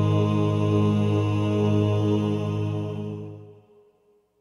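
A male gospel quartet's song ends on a long held closing chord, steady and then fading out to silence about three and a half seconds in.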